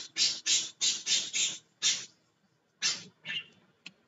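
A man's breathy, near-silent laughter: a quick run of short exhaled bursts, about three a second, then a couple of fainter ones.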